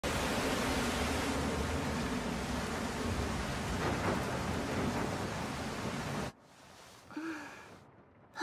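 Heavy, steady rain, a soundtrack rain effect, cutting off suddenly about six seconds in.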